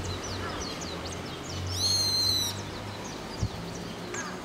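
Small birds chirping repeatedly in the blossoming cherry trees, short quick descending notes. About two seconds in, a loud, steady high-pitched squeal lasts just under a second, over a steady low hum.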